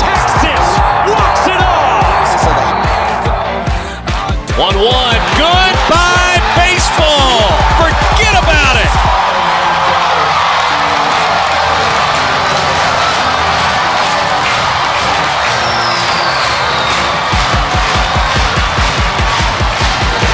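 Music track with a steady beat mixed over stadium crowd cheering. The beat drops out about nine seconds in and comes back near the end.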